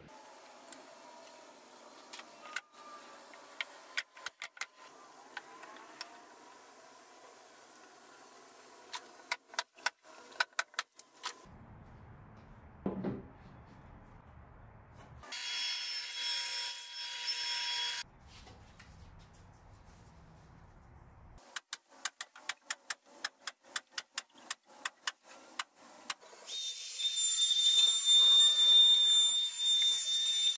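Woodworking power tools in short edited cuts: runs of sharp clicks from a pneumatic brad nailer firing, a few seconds of loud power-tool whine around the middle, and from near the end an electric palm sander running, the loudest sound.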